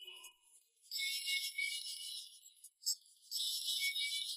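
Light, high tinkling of bells in the soundtrack music, in two spells of about a second and a half each, with a short tick between them.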